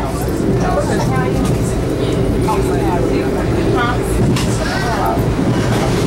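Interior ride noise of a 1982 Comet IIM passenger coach running along the track: a steady, loud low rumble of wheels on rail, with passengers' voices chattering over it.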